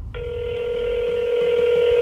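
Telephone ringback tone of an outgoing call: one steady two-second ring that cuts off sharply. It signals the call is ringing through, waiting to be answered.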